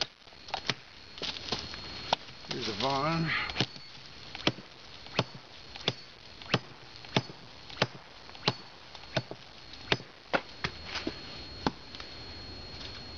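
A man's short wordless vocal sound about three seconds in, then a steady run of sharp, evenly spaced knocks, about three every two seconds.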